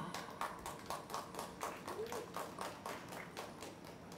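A quick, even series of sharp taps or claps, about four a second, with a brief voice-like sound about two seconds in.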